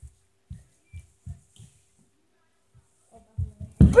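Soft, dull low thumps: five in the first second and a half, then a few more close together near the end.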